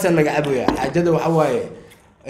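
A man's voice singing in long, wavering phrases, fading out near the end.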